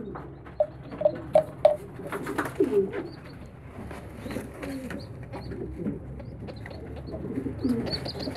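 Domestic pigeons cooing softly, a few low curved calls, with four quick short notes about a second in and faint rustling of the birds being handled.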